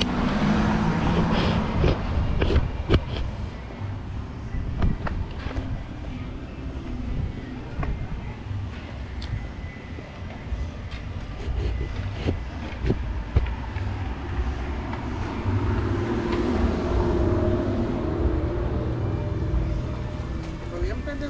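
Outdoor street ambience: a steady low rumble of car traffic, scattered sharp clicks and knocks, and faint voices about three-quarters of the way through.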